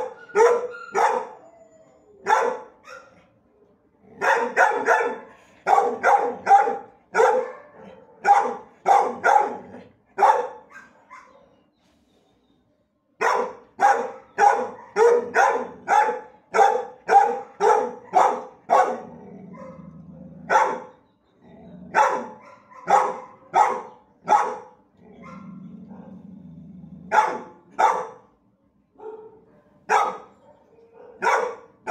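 Shelter dogs barking repeatedly, in runs of short sharp barks about one to two a second, with a pause of about two seconds near the middle. A low steady hum sounds twice under the barking in the second half.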